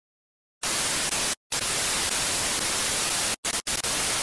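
Static hiss, a TV-style white-noise glitch sound effect, cutting in about half a second in. It drops out abruptly for a moment once early and twice near the end, in a stuttering way.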